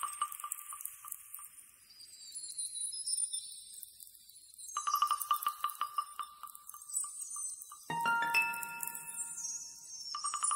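Electronic music of glittering, chime-like tones. A fast-pulsing tone fades out in the first two seconds and comes back about five seconds in. Several held tones enter near eight seconds.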